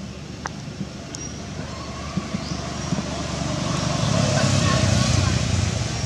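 A motor vehicle passing, its engine rumble and road noise growing to a peak about four to five seconds in and then easing off. A few short high chirps come through.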